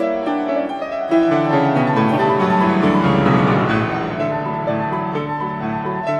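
Solo piano playing classical ballet music, a melody over chords.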